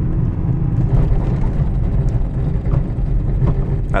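Car braking hard on a slippery snow-covered road with the anti-lock brakes working: a steady, uneven low rumble of the ABS pulsing the brakes and the tyres on packed snow, heard from inside the cabin.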